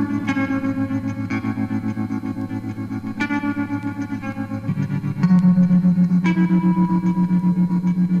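Lo-fi indie rock: effects-laden electric guitar with some distortion playing sustained chords that pulse rapidly. The chords are restruck every second or two, and a louder, lower chord comes in about five seconds in.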